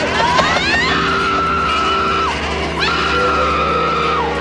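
A woman screaming: two long, high, held screams, each swooping up into the note and dropping off at its end, over a low, steady musical drone.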